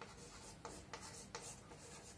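Chalk writing on a chalkboard: faint scratching strokes with a few short, sharp taps as the chalk meets the board.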